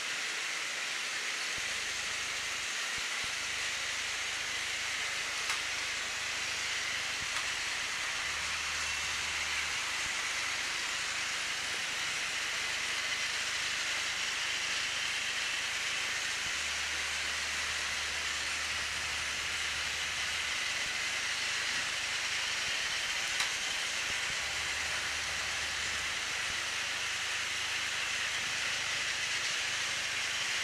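Several battery-powered Tomy Plarail toy trains running on plastic track: a steady high whirring of their small motors and gears, with wheels rattling over the rail joints. A few faint clicks sound along the way.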